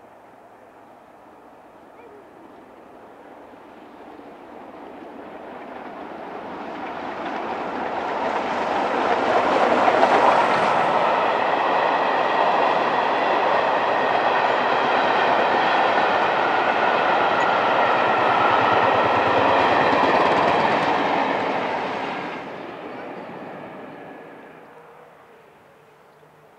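Steam-hauled passenger train passing at speed, with LMS Royal Scot class three-cylinder 4-6-0 No. 46100 at the head. It is heard approaching and building to its loudest about ten seconds in. The coaches keep running past, loud and steady with a high ringing from wheels on rail, then the sound fades away over the last few seconds.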